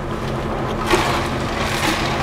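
A silicone spatula stirring and scraping a pureed bisque sauce around a stainless-steel skillet as it simmers, over a steady low hum. The stirring noise grows louder about a second in.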